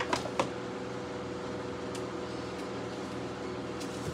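A few light knocks and taps of things being handled and set down on a bookshelf, three quick ones at the start and single ones about halfway and near the end, over a steady low room hum.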